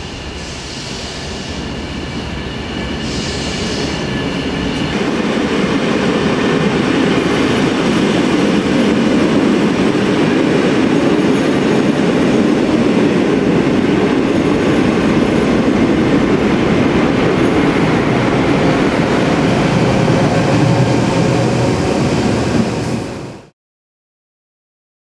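Passenger train rolling past close by, its coaches and wheels rumbling on the track. The noise builds over the first several seconds, holds steady, and then cuts off suddenly near the end.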